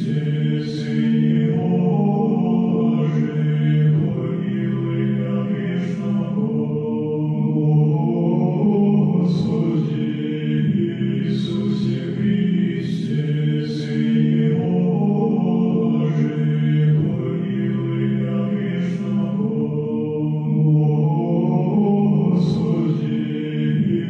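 Background music of slow vocal chant: low voices hold long sustained notes, with sung consonants breaking in every couple of seconds.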